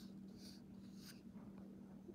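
Near silence: room tone with a low steady hum and faint rustling from the paper pages of a hardback book being handled.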